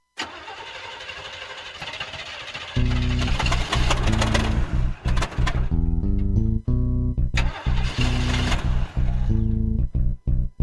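A car's engine being cranked over and sputtering as it struggles to start. About three seconds in it gets much louder, and the opening of a song with a stepping bass line comes in over it.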